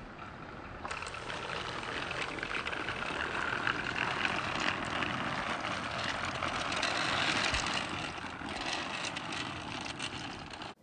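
Battery-powered Trackmaster toy train running on plastic track close by, pulling a string of toy trucks: the steady sound of its motor, gears and wheels grows louder about a second in and eases off near the end.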